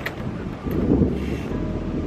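Wind buffeting the camera's microphone, a low rumbling gust that swells about halfway through.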